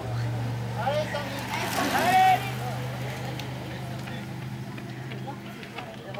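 Raised voices of roadside spectators calling out, loudest about two seconds in. Under them runs a steady low motor-vehicle engine hum that fades away near the end.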